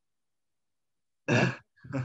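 Silence, then a single spoken "ja" a little over a second in.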